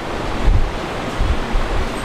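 Rushing noise of air blowing across a close microphone, with low rumbles about half a second in and again a little after a second.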